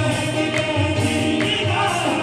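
Live qawwali music: group singing over a drum kit keeping a steady beat, with sticks striking drums and cymbal.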